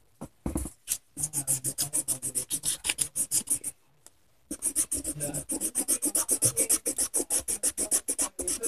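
Crayon colouring in on paper with quick back-and-forth scribbling strokes, about six a second, pausing briefly midway.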